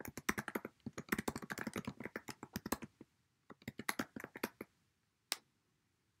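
Typing on a computer keyboard: a fast run of keystrokes for about three seconds, a short pause, a shorter burst of keys, and one last tap near the end.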